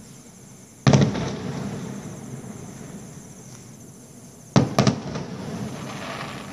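Firecrackers bursting: one sharp bang about a second in, then a quick cluster of three bangs about a second and a half before the end, each trailing off in echo.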